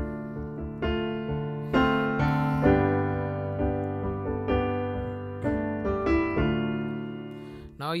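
Keyboard playing a piano sound: a D minor chord, then a G major chord from about halfway, each re-struck several times in a steady rhythm with the upper notes shifting. A man's voice starts speaking at the very end.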